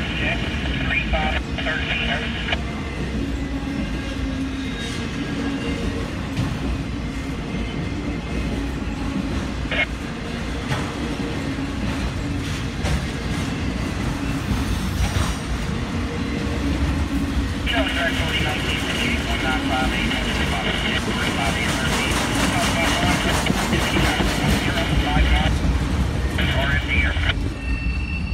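Freight train of autorack cars rolling past with a steady heavy rumble of wheels on rail. A high-pitched wheel squeal sounds briefly at the start and comes back from about two-thirds of the way through until just before the end.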